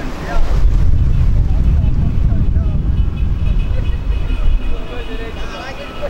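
Wind buffeting the camera microphone in a loud low rumble that starts about half a second in, with faint voices in the background.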